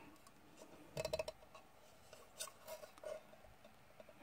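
Small clicks and light rattles from the tuner's enclosure being handled and turned over in the hand. There is a quick cluster of clicks about a second in, then a few faint ticks.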